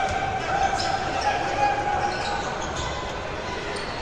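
Live basketball game sound on an indoor court: the ball bouncing on the hardwood floor, with voices from the players and the crowd echoing in the arena.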